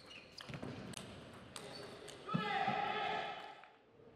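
Celluloid-style table tennis ball clicking sharply off bats and table in a quick doubles rally, then about two seconds in a player's loud, held shout lasting over a second, the loudest sound here.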